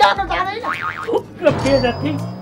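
A cartoonish springy 'boing' comedy sound effect with a wobbling up-and-down pitch, over a man's voice, with background music coming in near the end.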